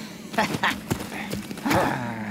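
Several sharp clicks and knocks, then a short burst of laughing voice near the end.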